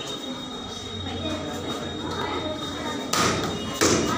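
Two loud slaps of kicks striking a taekwondo paddle kick target, about three seconds in and again just before the end.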